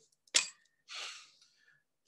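A short, sharp mouth sound, then a breathy exhale about a second in, from a person concentrating on a task.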